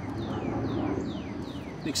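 A bird calling a quick series of short whistled notes, each sliding down in pitch, about three a second, over a low steady background rumble.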